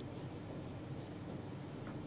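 Dry-erase marker writing on a whiteboard: faint strokes of the tip over a steady low room hum.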